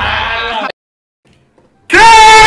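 A man's loud shout of surprise that cuts off suddenly, then about a second of near silence before a very loud, high-pitched scream from an edited-in reaction clip begins near the end.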